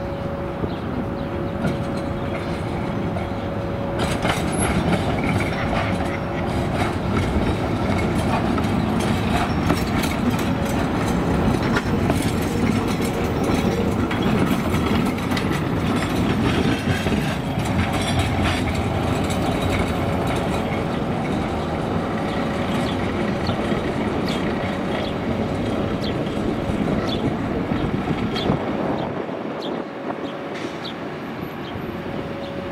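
An articulated tram rolls past at close range: steady running rumble and clatter of steel wheels on the rails, louder from about four seconds in. A thin steady hum runs through it, and sharp clicks come over the track joints and curves toward the end.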